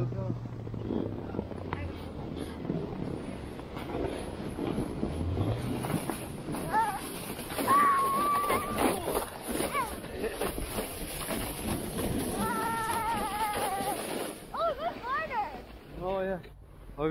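Plastic snow saucer sliding over packed snow with wind rushing on the microphone. Riders let out a long, held whoop about halfway through and more yelling near the end.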